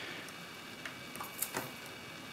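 A few faint light clicks from the brass levers of an opened lever lock, moved by a metal probe and a fingertip.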